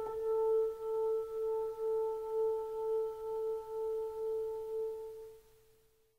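The closing note of an orchestral jazz ballad: a single held tone with faint overtones, pulsing in loudness about twice a second and dying away near the end.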